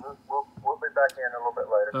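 A voice received over single-sideband on a Yaesu FTdx5000 HF transceiver, talking in thin, muffled radio audio. A short click comes about a second in.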